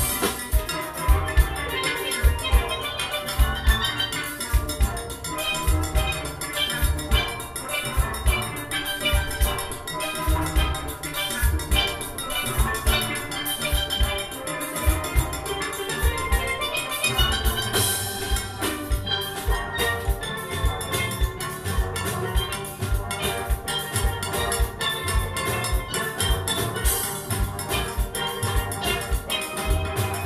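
Steel band playing a full panorama arrangement: many steelpans ringing out fast melodic runs and chords over a steady beat of drums and percussion.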